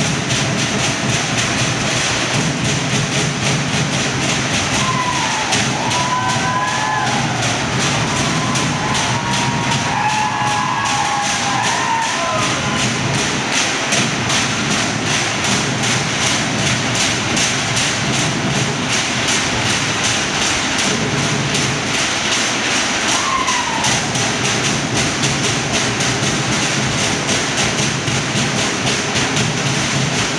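Fast, unbroken drumming keeping a steady driving beat for the fire knife dance. A few short, high whoops rise and fall over the drums in the first half and once more later.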